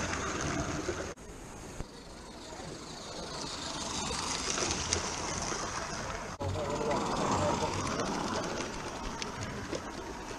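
Indistinct voices of people talking in the background over steady outdoor noise, broken twice by abrupt cuts, about a second in and about six seconds in.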